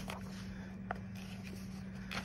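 Quiet room tone with a steady low hum and a single faint click just under a second in.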